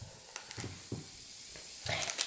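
Faint, steady fizzing hiss of a bath fizz ball dissolving in a bowl of water, with a few soft crinkles from a wet foil wrapper.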